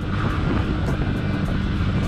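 Yamaha R15 v3's single-cylinder engine running steadily while the motorcycle rides at low city speed, with wind rumbling over the camera's built-in microphone.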